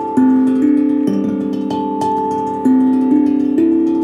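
Steel tongue drum struck with mallets, playing a slow melody of ringing, overlapping notes, a new note about every half second.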